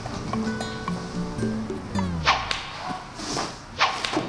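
Background music that slides down in pitch and cuts out about two seconds in, followed by three sharp cracks of a whip being lashed in quick succession.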